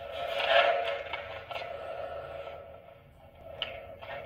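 Breath noise picked up by a microphone at the mouth and passed through a Zoom MultiStomp effects pedal, giving a filtered, hissing sound: a strong swell about half a second in, a weaker second one, then fading, with a short click near the end.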